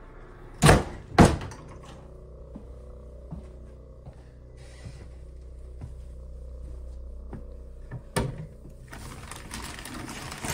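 A door being shut: two loud thunks about half a second apart near the start, followed by a low steady hum. Just after eight seconds a wooden cabinet door knocks open, and rummaging inside it follows.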